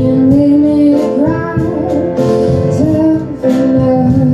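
A woman singing live in held, wavering notes, accompanying herself on a grand piano, with a short break between phrases near the end.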